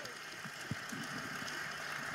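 Quiet, steady hall room tone: an even hiss with a couple of faint soft knocks about half a second in.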